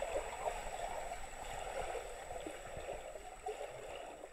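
Water rushing and gurgling, as heard underwater in a swimming pool, a steady even noise that slowly gets quieter.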